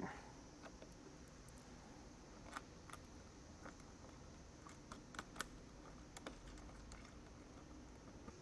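Faint, scattered small clicks of a plastic connector plug and its fastener being handled and fitted into a bracket by hand, over near silence; the clearest are three quick clicks a little past the middle.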